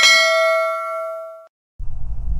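Notification-bell 'ding' sound effect: a single bright bell strike with several ringing overtones that fades and cuts off about a second and a half in. A low droning hum starts near the end.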